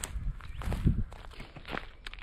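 Dry leaf litter, pine needles and twigs crunching and rustling on a woodland floor in irregular steps about twice a second, with a heavier low thump near the middle.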